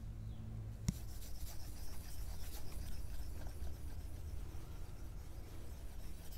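A stylus tip tapping once on an iPad's glass screen about a second in, then rubbing and scratching across it in quick, repeated drawing strokes.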